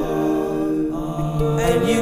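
Layered a cappella vocal harmony, one man's voice multitracked into several parts, holding a sustained chord without words. A new, moving vocal line enters about one and a half seconds in.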